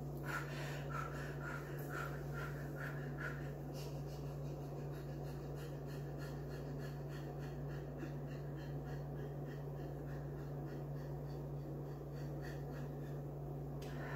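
A woman breathing in quick, short, rhythmic breaths through the mouth, about three a second, sharpest in the first few seconds and then fainter, over a steady low hum.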